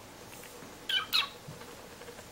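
Kitten giving two short, high-pitched mews in quick succession about a second in.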